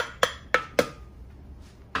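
A metal spoon knocking and scraping against a ceramic dish and a glass blender jar: four sharp clinks in the first second, then quieter.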